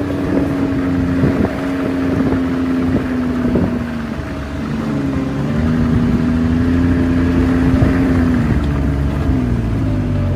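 Snowmobile engine running steadily while riding, its pitch dipping briefly about halfway through and again near the end.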